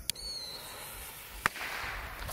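Butane torch lighter hissing as it lights the fuse of a Moonshot salute bottle rocket, the fuse then hissing and smoking. A brief high whistle comes right at the start and a single sharp crack about halfway through, firework sounds that are not from this rocket.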